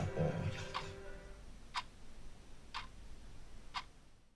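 A clock ticking, four even ticks a second apart.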